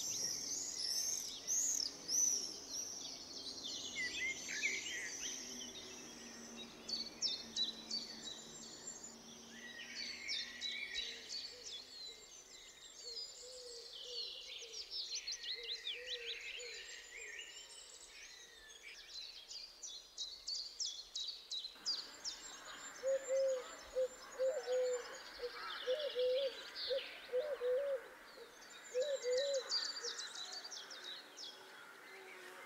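Woodland birdsong: several birds chirping and trilling in quick, high notes. In the last third a lower call of short notes, repeated about once or twice a second, joins them.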